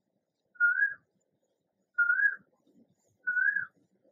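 A short, high whistle-like note repeated three times at even intervals of about a second and a half, each note slightly rising and wavering.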